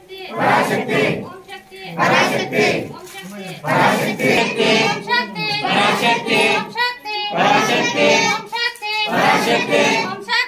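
A group of devotees chanting loudly together in a devotional chant of short phrases, each about a second long, repeated over and over.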